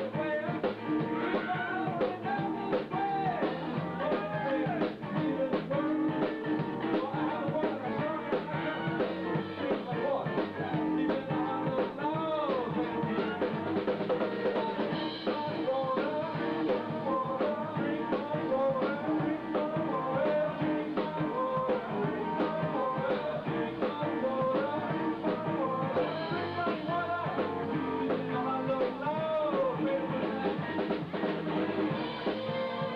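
Live blues band playing a shuffle on electric guitars, keyboard and drum kit, with bending guitar or vocal lines over a steady beat.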